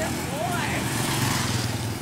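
Motorbike engine running steadily, with a voice heard briefly about half a second in.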